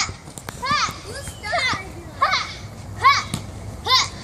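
Young girls giving short, high-pitched shouts and squeals while they play-fight, about one cry every second, each rising and falling in pitch.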